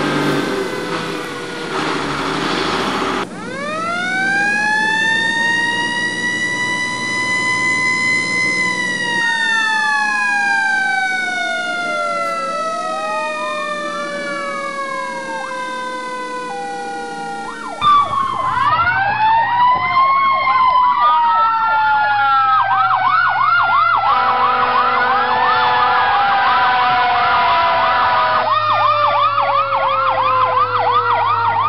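Fire engine sirens: a siren winds up in pitch, holds, then slowly falls, crossed by sweeping wails, and from about the middle a fast rising-and-falling yelp runs over another siren tone that falls in pitch. A low truck engine hum runs underneath.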